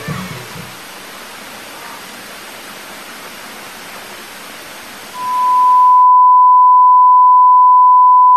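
Television static hissing evenly as the last of a cartoon soundtrack fades out. About five seconds in, a loud, steady, high single-pitched beep starts and runs on, and the hiss cuts off a second later.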